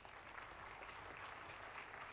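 Faint audience applause, a steady patter of many hands clapping.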